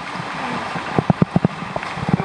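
Water sloshing and splashing in a canyon pool, with a quick run of about five dull knocks about a second in.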